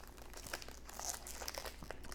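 Foil wrapper of a 2019 Bowman Jumbo trading card pack crinkling faintly as it is handled and pulled open, with small crackles.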